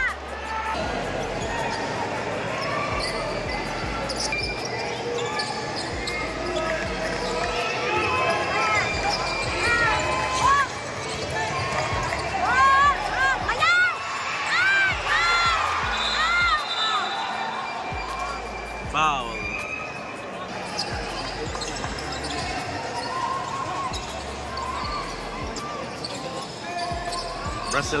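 Live basketball play in a gym: the ball bouncing on the hardwood and sneakers squeaking in short sharp chirps, thickest midway through, over steady crowd chatter.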